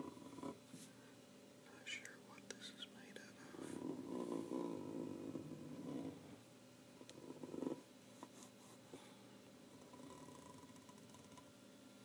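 Small clicks and clacks of an old folding camera being handled and cleaned. Between about 3.5 and 6 seconds in, and again briefly near 7.5 seconds, comes a louder, rough, low-pitched sound whose source can't be made out.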